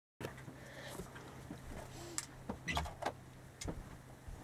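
Irregular light knocks and clicks of a person moving about and handling things close to the microphone, over a steady low hum.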